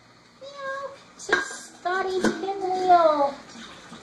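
Puppies yelping and whining in short, high cries with sliding pitch, the longest falling away a little after three seconds. A sharp clank, as of a metal food bowl, comes just after a second in, and a second knock follows about a second later.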